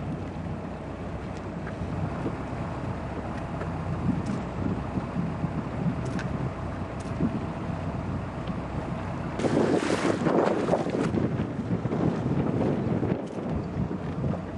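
Wind buffeting the microphone and water rushing along the hull of an E scow sailing under way, with a louder rush for a second or two about two-thirds of the way through.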